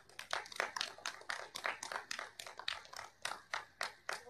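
Light applause from a small audience, the individual claps heard distinctly, several a second.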